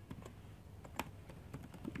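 Computer keyboard typing: a few faint, separate keystrokes, the clearest about a second in.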